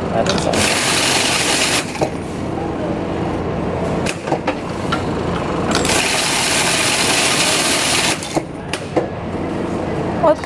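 Cummins coin-counting machine counting a batch of loose change: coins clattering and rattling through the mechanism. There are two louder spells of rattling, from about half a second to two seconds in and from about six to eight seconds in.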